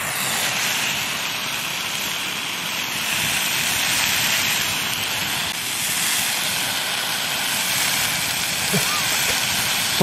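Steak and mushrooms sizzling steadily in a frying pan over a camp stove.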